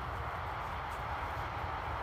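Steady outdoor background noise: an even hiss over a low, unsteady rumble, with no distinct events.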